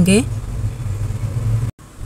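Onions and whole spices frying in ghee in an aluminium pot, a faint sizzle over a steady low hum; the sound cuts out abruptly near the end.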